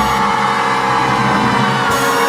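Swing-style band music holding one long sustained chord.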